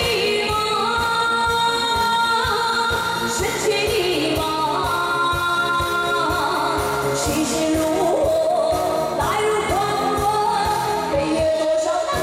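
A woman singing an Asian pop song live into a microphone over an amplified backing track with a steady beat.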